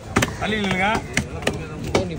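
Heavy fish-cutting knife chopping through a red snapper into a wooden chopping block: several sharp chops at uneven intervals.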